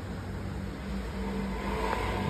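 Steady low hum and rumble of room background noise, with no distinct events.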